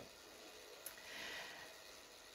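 Near silence: quiet room tone with a faint breath about a second in, just after a tiny click.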